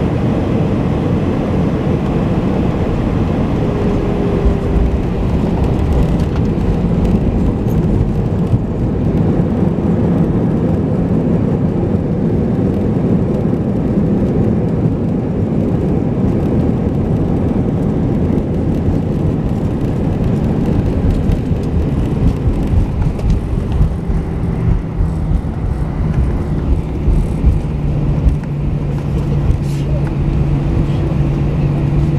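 Cabin noise of an Airbus A319-100 rolling along the runway after landing: a loud, steady rumble of engines and wheels. In the last few seconds a low steady hum comes in and the rumble turns bumpier.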